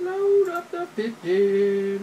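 A person's voice in drawn-out, sing-song syllables with long held notes, close to humming.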